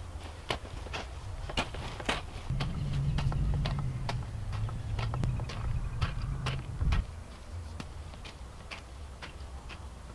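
Long-handled garden hoe striking and scraping through soil, chopping out weeds in a vegetable bed: irregular soft chops and scrapes. A low rumble runs under it for a few seconds in the middle.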